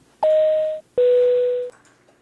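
A two-note electronic chime: a higher steady tone, then a lower one, each lasting a little over half a second.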